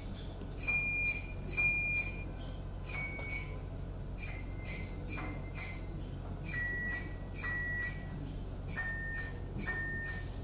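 A simple eight-tone FPGA electronic organ playing a slow tune of short beeping notes, about one a second, played back through loudspeakers. The notes come in pairs of the same pitch, each pair a step lower than the one before.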